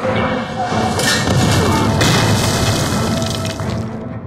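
Deep booming impact sound effects over a dramatic film score, loud throughout.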